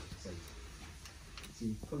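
Austin 7's four-cylinder side-valve engine idling with a low, uneven run and a light ticking, sounding as if it is running on three cylinders: a misfiring cylinder.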